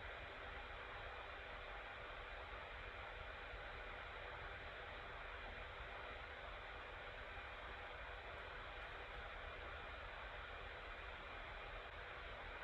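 Quiet, steady hiss of room and microphone noise with a faint steady hum, and nothing else happening.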